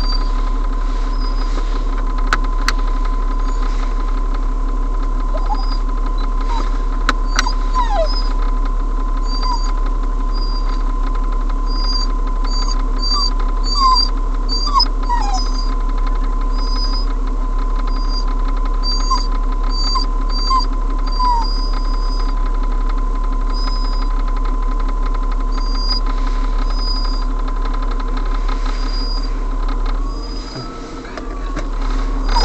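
A steady hum with a constant tone, with short high chirps scattered over it. Brief falling squeaks come mostly about a quarter and half way through.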